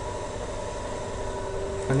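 Steady background hum and hiss with faint steady tones, from the recording's room or microphone noise, between spoken words. A voice starts just at the end.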